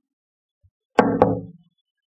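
Two quick, sharp knocks about a second in, close together, with a short ringing tail.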